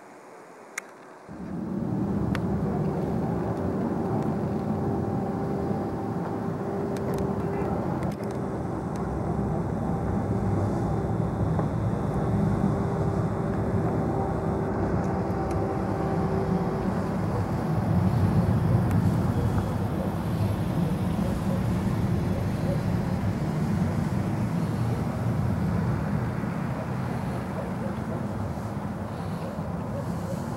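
Outdoor rumble of city traffic with wind buffeting the microphone. It starts suddenly about a second in and stays loud, with a steady hum through the first half.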